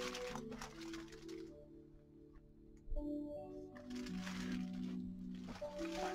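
Music from a vinyl record playing on a Technics SL-1600MKII direct-drive turntable, heard quietly through speakers: held notes that step from one pitch to another. It fades almost to silence about two seconds in and picks up again a second later.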